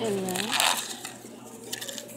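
A short bit of a person's voice, then the rustle of a plastic bag being handled and a few light clicks near the end.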